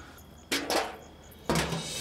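Sudden thumps: two sharp knocks close together about half a second in, then a heavier, deeper thump near the end.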